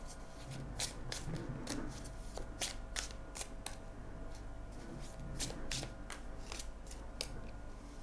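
Tarot cards being shuffled by hand, hand to hand, in an overhand shuffle: a steady run of short, irregular card slaps and clicks, two or three a second.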